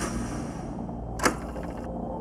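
Portable radio cassette recorder being worked by hand: a click as the cassette door is pushed shut, then a sharper clack of the play key about a second later, over a low, steady hum.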